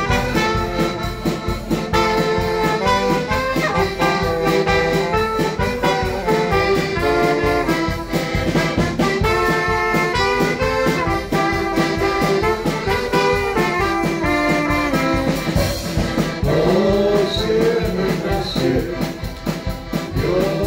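Live band playing an instrumental dance tune: trumpet and saxophone carrying the melody over accordions and a steady drum-kit beat.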